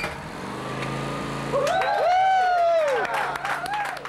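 Honda EX1000 portable generator's small four-stroke engine pull-started by its recoil cord, catching at once and running with a steady hum. From about one and a half seconds in, several drawn-out voices glide up and down over it.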